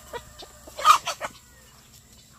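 Chickens clucking: a few short clucks in the first second and a half, the loudest a little under a second in, then quieter.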